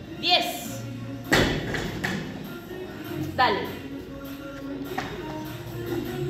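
Background music with a singing voice, and one heavy thud about a second in, the barbell with bumper plates dropped onto the rubber gym floor.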